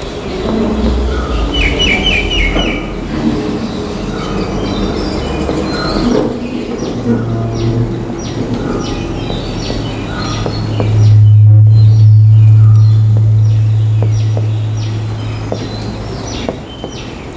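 Birds chirping with many short, repeated high calls that come thicker in the second half. Under them a low steady hum starts about seven seconds in and is loudest a few seconds later.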